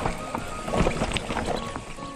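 Mountain bike rattling and knocking as it rides down a rocky dirt trail, with irregular clatter from the wheels on stones and the bike's frame. Background music runs faintly underneath.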